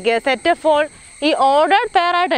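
A woman talking, over a steady high-pitched drone of crickets that runs on behind her voice.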